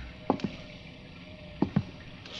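Radio-drama footsteps approaching across a hard floor: two pairs of sharp heel clicks about a second apart, over a faint background hiss.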